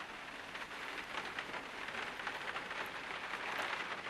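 A steady, quiet hiss made of many fine crackles.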